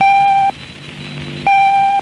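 Radio station's top-of-the-hour time signal: a high electronic beep about half a second long, sounding twice about one and a half seconds apart, with a quieter low buzzing tone between the beeps.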